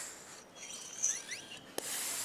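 FX high-pressure hand pump being worked in long strokes during the first pumps of filling an air rifle: a hiss of air with each stroke, one fading just after the start and another beginning near the end, with faint rubbing of the pump shaft in between.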